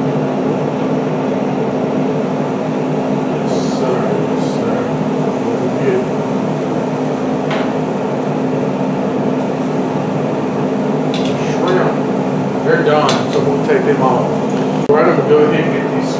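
Steady hum of a Traeger Junior pellet grill's fan running while it cooks, with a few light clicks of metal tongs on the grate.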